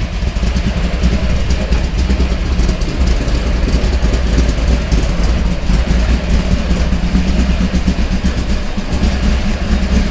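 A 1965 Chevy II Nova's 406 cubic-inch V8 with a solid mechanical cam, running at a low, steady idle as the car creeps forward at walking pace.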